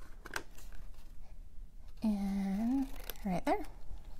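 A woman humming: one held note for under a second that rises at its end, followed by a couple of short vocal sounds. Before it, a quiet snip of scissors cutting cardstock.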